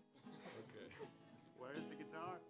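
Faint acoustic guitar strumming, barely heard because the guitar is not coming through the sound system. A voice comes in near the end.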